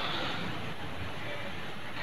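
Steady background noise between spoken phrases: an even hiss with a low rumble, holding at one level with no distinct events.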